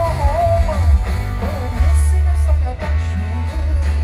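A live rock band playing through a concert PA: acoustic guitars strummed over bass and drums, with heavy low bass. A male voice sings a sliding melodic line in about the first second.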